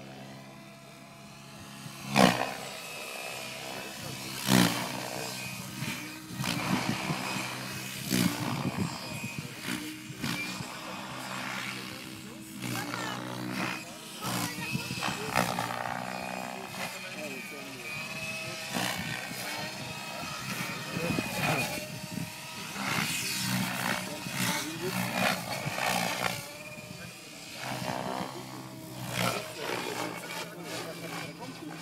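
Henseleit TDR radio-controlled 3D helicopter in flight: a steady motor and rotor whine, with the rotor blades' whoosh swelling and fading as it manoeuvres. Two sharp loud swishes come about two seconds in and again at about four and a half seconds.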